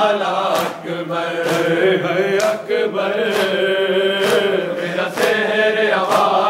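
Group of men chanting a mourning lament (nauha) together, with hands striking bare chests in time (matam), about one strike a second.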